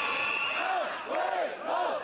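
Large crowd of protesters shouting a chant in unison, the voices rising and falling about twice a second over the general noise of the crowd.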